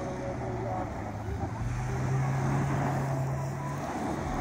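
Mahindra Scorpio SUV's engine revving hard as it accelerates into a spin on loose dirt, its note stepping up and holding higher about halfway through.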